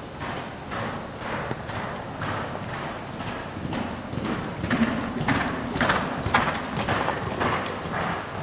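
A horse's hoofbeats on the sand footing of an indoor riding arena: a steady run of soft thuds that grows louder and sharper about halfway through.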